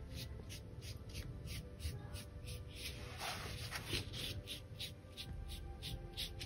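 A paintbrush flicking short, quick strokes of acrylic paint onto the surface, about four or five strokes a second, while feathers are being built up. Quiet background music plays underneath.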